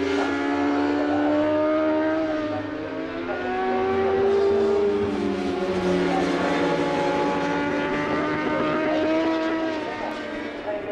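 Several 1000 cc four-cylinder superbike engines running hard on the circuit, their notes overlapping and rising and falling in pitch as the bikes accelerate, slow and pass.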